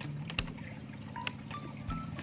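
A few sharp clicks of a digital multimeter's rotary dial being turned, with short flat beeps in the second half, over a steady low hum.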